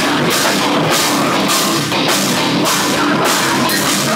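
Metal band playing live and loud: distorted electric guitars over a drum kit, with the cymbals crashing again and again.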